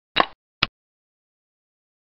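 Board-game software's piece-move sound effect, two short clicks about half a second apart, the first a little longer with a brief tail, as a xiangqi piece is moved on the board.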